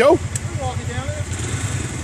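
ATV engines idling steadily with a low, even pulse.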